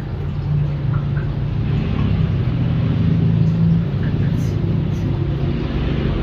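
A low, steady motor hum that grows slightly louder over the first few seconds.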